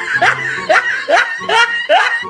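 High-pitched laughter in a run of short rising bursts, about two a second.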